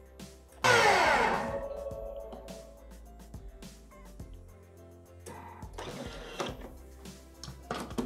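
Thermomix TM6 blade spinning at top speed (speed 10), grinding sugar and lemon zest. It starts suddenly about half a second in, loudest at the start, and dies away over the next few seconds.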